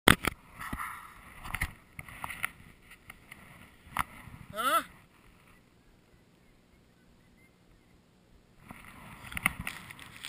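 Knocks and rubbing from an action camera being handled and repositioned, with a short vocal sound sliding in pitch about five seconds in. A few seconds of near quiet follow before the handling knocks start again.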